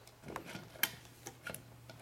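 A string of small, sharp clicks and taps, about six in two seconds and louder toward the end, from rifle parts being handled on a steel workbench.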